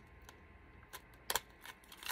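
A few small, sharp clicks and taps on a small clear plastic box as scissor tips pick at the tape sealing it, one click louder past the middle.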